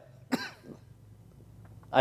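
A single brief cough about a third of a second in.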